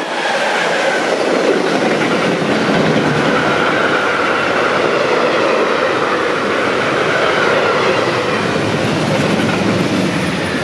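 A freight train of empty double-deck car-carrier wagons passes close by at speed, its wheels running on the rails with a steady, loud noise.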